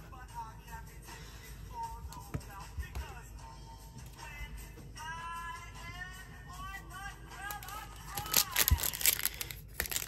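A foil trading-card pack wrapper being torn open and crinkled by hand, a loud, dense crackling from about three-quarters of the way in, over quiet background music.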